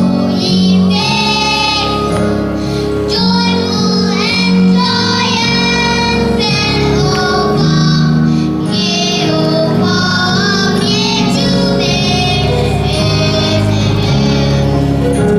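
Young girls singing a song into a microphone, over sustained instrumental accompaniment.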